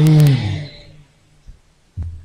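A man's voice over a sound system holds a long final syllable that falls in pitch and fades out within the first second. Then comes a pause of soft room sound, with a faint knock and a dull thump near the end.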